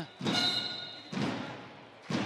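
A handball bouncing on the sports-hall court, two thuds about a second apart, each with the hall's echo trailing off.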